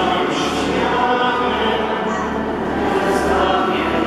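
Many voices singing a hymn together in a church, holding long notes.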